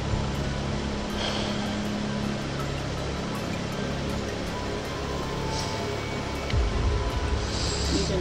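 Soft background music with a steady low drone, over an even hiss of outdoor roadside noise, with a brief low rumble about six and a half seconds in.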